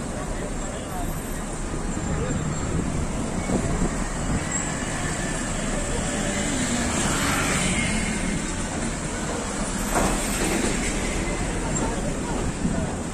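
Steady street noise of a slow-moving car engine and road traffic, with indistinct voices among a walking group. A brief, sharper sound comes about ten seconds in.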